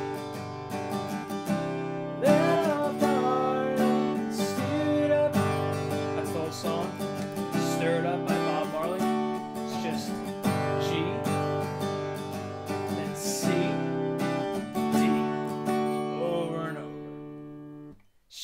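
Steel-string acoustic guitar strummed through a repeating G, Cadd9 and D chord progression, with a voice singing along at times. The playing cuts off suddenly at the end.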